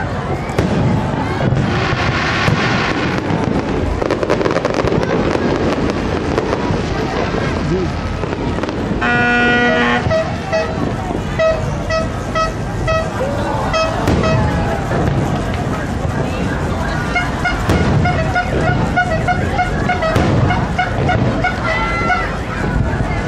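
Crowd chatter and firework bursts, with a horn sounding over them: one held toot about nine seconds in, then a run of rapid short toots through the second half.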